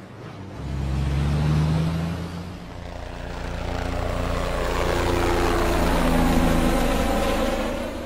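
Bus engine running, starting about half a second in, then speeding up with its pitch rising as it pulls away, fading near the end.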